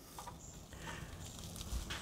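Faint handling sounds of fingers wiping transmission fluid around the inside of a drained steel automatic-transmission pan, with a few light clicks.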